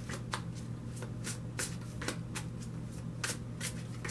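A tarot deck being shuffled by hand, overhand style: short soft slaps of cards dropping onto the deck, about three or four a second.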